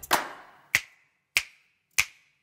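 Title theme music stripped down to sharp clap-like percussion hits, four of them about two-thirds of a second apart, each leaving a short ringing tone that fades before the next.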